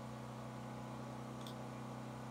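Steady low background hum, with a single faint click about one and a half seconds in.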